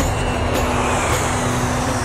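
Jet airliner's engines close by: a steady, loud rushing noise with a faint high whine that slowly falls.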